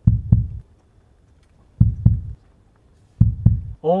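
A slow heartbeat, most likely an added sound effect for suspense: three pairs of low double thumps (lub-dub), the pairs about a second and a half apart.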